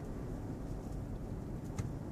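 Steady low cabin hum of a 2015 Toyota 4Runner's V6 and tyres while cruising, heard from inside the cabin.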